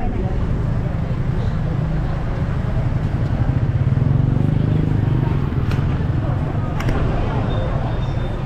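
Low rumble of a car driving slowly, heard from inside the car with the window open, slightly louder about halfway through, with voices of people in the street. A couple of brief clicks come near the middle.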